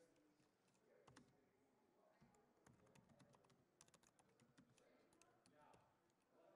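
Faint typing on a laptop keyboard: a quick run of key clicks, thickest from about two to five seconds in.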